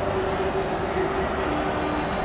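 Stadium crowd noise: the steady din of a large football crowd, with a faint held tone running through it that drops in pitch near the end.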